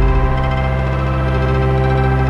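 Electronic music with steady held synthesizer chords and a low bass note.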